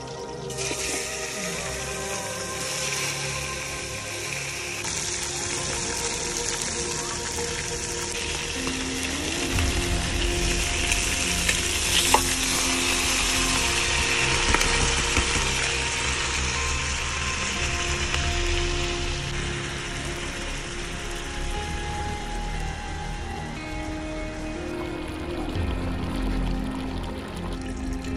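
Chicken, tomatoes and potatoes frying in a large aluminium pot over a wood fire, a steady sizzle that starts about a second in, with one sharp click about halfway through. Background music runs underneath.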